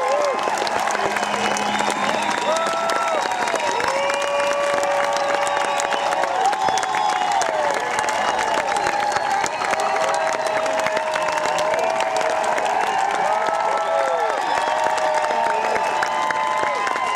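Concert audience applauding steadily after the last song, with many voices cheering over the clapping.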